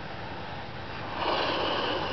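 A person blowing a long breath into a red latex balloon, inflating it; the breathy rush starts about a second in and grows louder.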